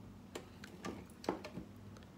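A few soft, irregular clicks from a flute's keys and mechanism being pressed and handled, about five in two seconds, the loudest just past the middle.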